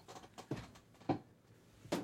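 Three faint, short knocks and clicks over low room tone, spread across the two seconds: the sound of equipment being handled and moved around.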